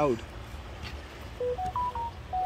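A short electronic tune of clean beeps, each stepping up in pitch, starting a little past halfway, over a steady low background rumble.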